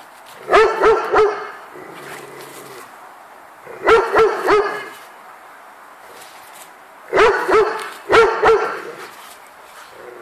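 A large dog barking in four short bursts of two or three barks each, while play-fighting with another dog.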